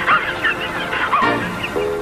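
Muttley, the cartoon dog, snickering with his wheezing laugh over music, the music settling on a held chord near the end.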